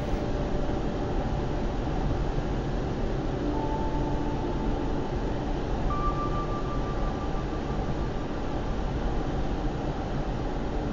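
Steady road and engine noise of a car driving, heard from inside its cabin. A faint brief whine rises above it partway through.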